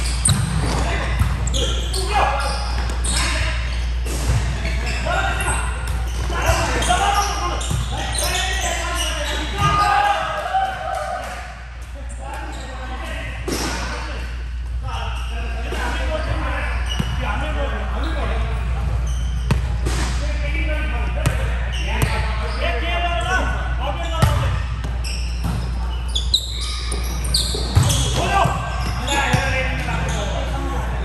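Indoor volleyball play: a volleyball slapped by hands and hitting the court floor in sharp knocks at irregular intervals, mixed with players' voices calling out.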